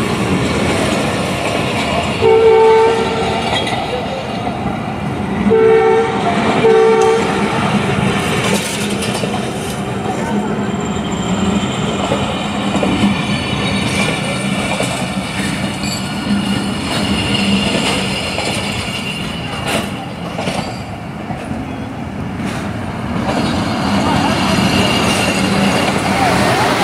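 Pakistan Railways passenger coaches rolling past with a steady running and rail-joint clatter. A train horn sounds three times in the first seven seconds: one blast, then two short ones close together.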